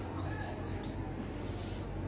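Small birds chirping: a quick run of short, high chirps in about the first second, then fading, over a steady low background hum.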